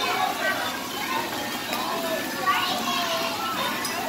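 Children's voices calling and chattering, with no clear words, over the steady splashing of water pouring down chutes and a water wheel.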